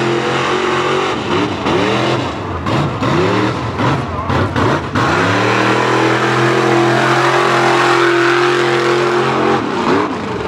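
Mud truck's engine revving hard through a mud pit. For the first few seconds the revs surge and fall again and again. About five seconds in it climbs to a high pitch and holds there, then drops off near the end.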